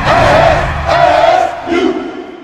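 A group of voices shouting a chant in unison, in three loud bursts in quick succession over a low rumble.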